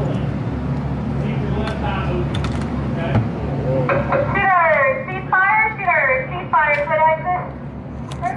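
Voices talking, with wide swoops in pitch in the second half, over a steady low hum that fades out about halfway through. A few sharp clicks sound in between.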